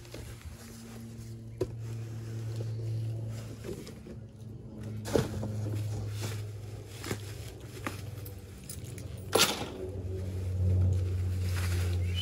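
Plastic wrapping crinkling and rustling, with cardboard scraping, as a folding solar panel is pulled from its bag and box; a few sharp rustles stand out, the loudest near the end. A low hum in the background comes and goes.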